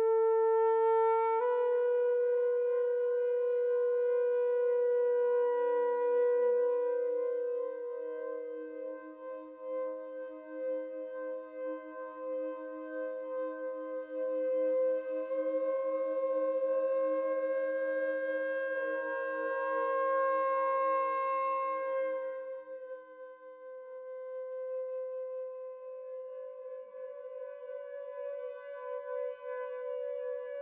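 Quartertone alto flute with electronics playing long, slowly shifting held notes. A quieter lower tone is sustained beneath through much of the passage. The upper note steps up slightly near the start, and the sound softens about two-thirds of the way through.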